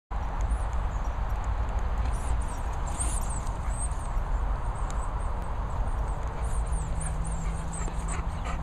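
Wind buffeting the microphone with a steady low rumble and rushing, over faint, high-pitched bird chirps repeating throughout.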